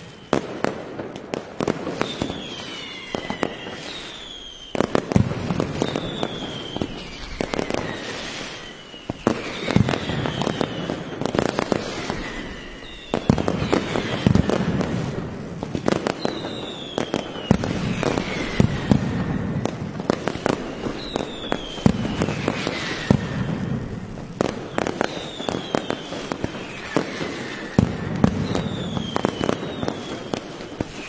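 Mascletà: a dense, unbroken barrage of firecracker bangs, with falling whistles repeating every second or two over the cracking.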